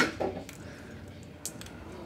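A man's short cough as he brings swallowed coins back up, then quiet with a faint click about one and a half seconds in.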